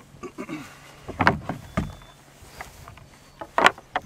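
A few knocks and thuds as the parts of a Dobsonian telescope's rocker base are handled and set down: one about a second in, a duller thud a little later, and a sharp double knock near the end, the loudest.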